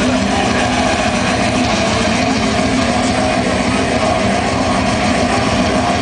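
Extreme metal band playing live at full volume: heavily distorted electric guitar through a Marshall amplifier stack over fast, unbroken drumming, merged into one steady, dense wall of sound.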